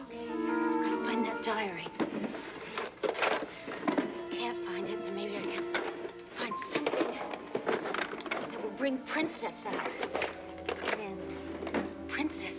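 Dramatic background music: sustained notes with short struck accents, joined by a few light thunks.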